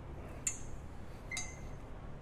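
Two light metallic clinks about a second apart, the second ringing briefly, as steel parts of a manual tube bender and the tube knock together while being handled.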